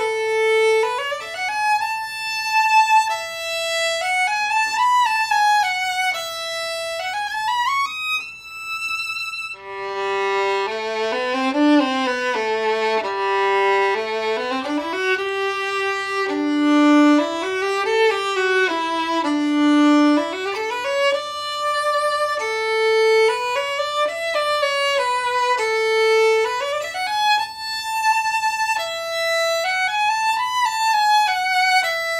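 Solo violin played with a carbon fiber bow on Thomastik Vision strings, a slow legato melody: first on a Fiddlerman Master violin, then, after an abrupt change about ten seconds in, a lower passage on a Holstein Traditional Cannone violin.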